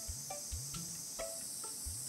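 Steady high-pitched drone of insects, with a few faint low thuds underneath.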